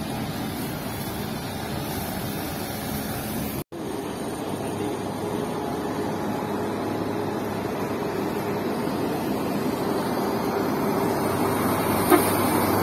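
Diesel coach engine running steadily. After a brief cut-out about four seconds in, it grows gradually louder as the coach drives up close.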